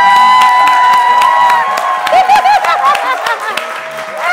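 A small group cheering and clapping: one long, high held scream at first, then several short high whoops over steady hand clapping.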